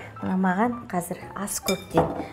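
A woman talking, with light clinks of dishes on the counter and a brief ringing clink near the end.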